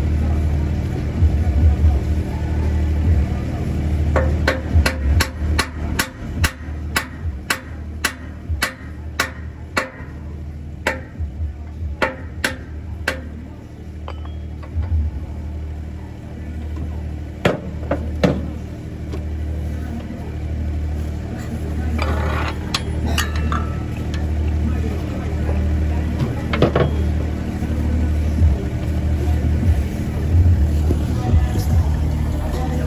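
Hammer blows on a steel driver plate, driving a liquid-nitrogen-shrunk steel bushing into its interference-fit bore: a quick run of knocks about two a second, then a few single knocks spaced out later on. A steady low hum runs underneath.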